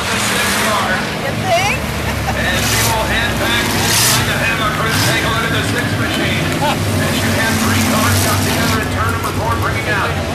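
Engines of hobby stock race cars running as they circle a dirt oval, a steady drone with a few louder rushes as cars pass. Crowd voices chatter over it.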